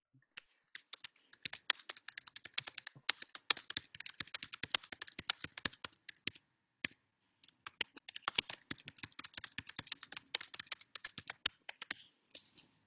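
Typing on a computer keyboard: rapid runs of clicking keystrokes, broken by a pause of about a second a little past the middle.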